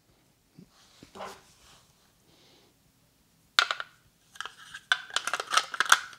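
Hard plastic clicks and rattles as AA batteries are fitted into the battery compartment of a Blink Outdoor camera's plastic body. One sharp click comes about three and a half seconds in, then a quick run of clicks and rattles near the end.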